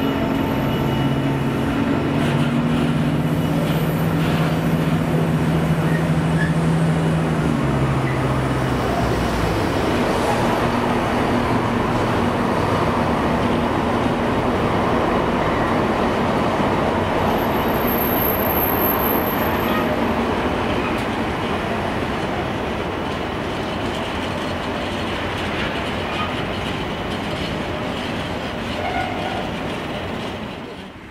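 Freight train of flat wagons loaded with tank containers rolling past, a steady noise of wheels on rail that eases off over the last ten seconds as the wagons pull away. A low steady engine drone runs under it and stops about nine seconds in.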